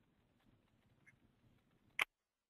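Near silence on a conference-call audio line: faint hiss with a few tiny ticks, and one short, sharp click right at the end.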